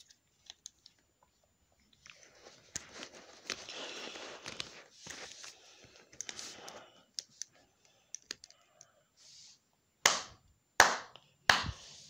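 Plastic wrestling action figures being handled and rubbed against clothing: a scrappy rustling with scattered clicks, then three sharp knocks in quick succession near the end.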